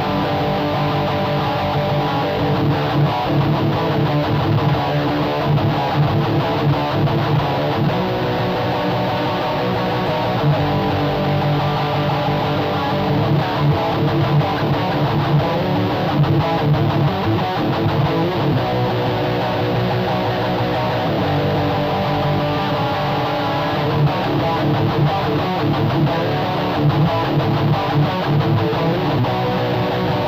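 Electric guitar playing a fast scratch part at 180 bpm, continuous and unbroken.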